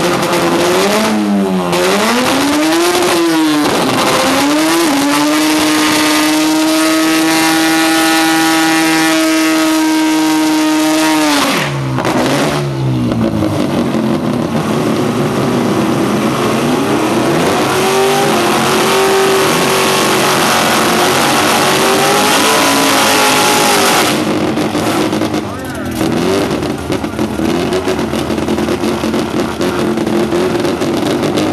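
Pickup truck's engine revving in quick blips, then held at high revs for several seconds during a burnout, with the rear tyres spinning and hissing. The revs drop sharply about twelve seconds in, and the engine runs on under loud tyre noise, revving up and down again.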